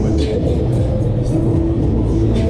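Loud fairground ride music with a heavy bass, with a brief rushing whoosh on the microphone twice as the Street Fighter pendulum ride swings.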